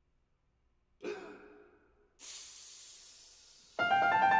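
Audible breathing before playing: a short breath about a second in, then a longer, fading hiss of breath just after two seconds. A Steinway grand piano then comes in loudly near the end with sustained, ringing notes.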